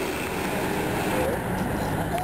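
Street traffic noise, dominated by a city bus's engine running steadily close by, with voices faintly underneath.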